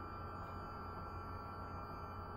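Faint steady drone of background music with a few held tones over a low hum.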